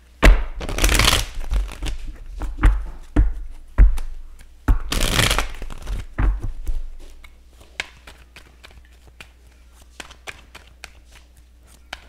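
A deck of tarot cards being shuffled by hand: two rushes of riffling cards, about a second in and about five seconds in, among sharp taps and thumps of cards on the table, then only faint occasional clicks in the second half.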